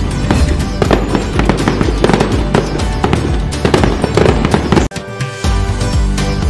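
Fireworks sound effect, a rapid crackle of bangs, laid over festive background music; it cuts off suddenly a little before five seconds in, and the music carries on alone.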